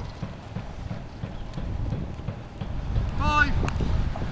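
Footsteps of several footballers running on a grass pitch, a steady run of low thuds. About three seconds in, a short shouted call rises and falls in pitch.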